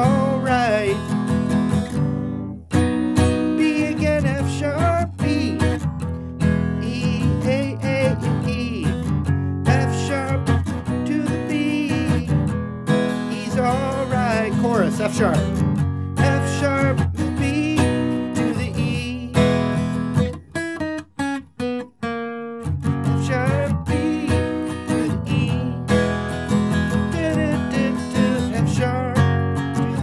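Steel-string acoustic guitar strummed with a pick, running through a chord progression in B (B, F-sharp, E, A). There are a few short breaks in the strumming about two-thirds of the way through.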